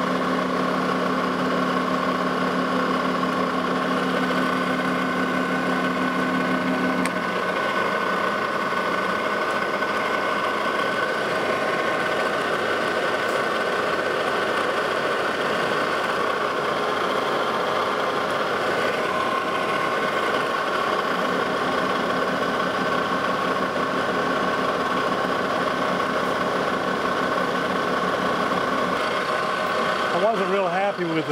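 Lodge and Shipley manual metal lathe running under power while turning a high-carbon steel hex bar with a carbide insert: a steady machine whine with cutting noise. A lower hum drops out about a quarter of the way in and comes back after about two-thirds.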